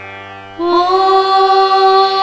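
Tamil devotional music in a Carnatic style. It dips briefly in the first half second, then a long steady melodic note begins over a low drone.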